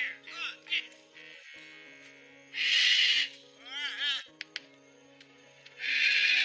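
Background film music with steady held chords, broken by an animal-like cry: a loud harsh burst about two and a half seconds in, then a quick run of warbling, bending calls.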